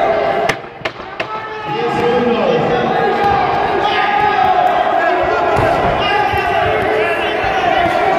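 Ringside crowd at a kickboxing bout, many voices shouting and yelling over one another. The shouting briefly drops about half a second in, and a few sharp knocks are heard in that dip.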